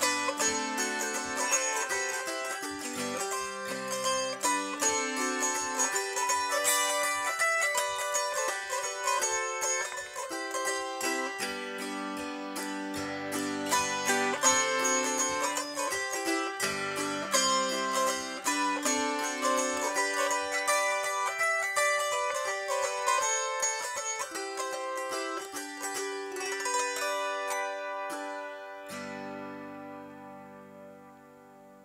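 Autoharp played solo: plucked, ringing notes over changing chords. It fades out near the end, with a last chord left ringing.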